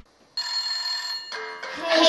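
An iPhone ringtone starts after a brief silence: a held chord of steady tones that shifts to a new pattern about halfway through.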